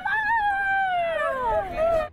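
A woman's ritual folk lament (prichitanie) for a mock funeral of flies: one long wailing cry that starts high and slides steadily down in pitch.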